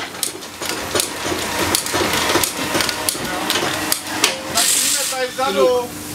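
Irregular metallic knocks and clicks of mechanics' hand tools working on a Škoda Fabia S2000 rally car, with a short hiss about four and a half seconds in.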